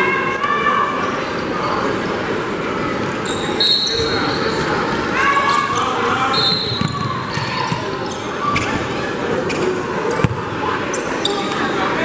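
Basketball game sounds in a large gym: crowd voices and shouts echoing through the hall, the ball bouncing on the hardwood floor with a few sharp knocks, and short high squeaks of shoes on the court.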